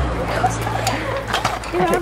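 Children's voices laughing and calling out over one another, with a few sharp clicks or knocks among them.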